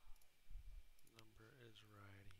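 A few faint computer-mouse clicks, then a man's voice from about a second in, a drawn-out 'uhh' or hum held at one pitch.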